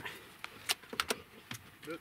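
A handful of short, sharp clicks and knocks as a dog scrambles up into a pickup truck's cab, its feet striking the door sill and cab floor.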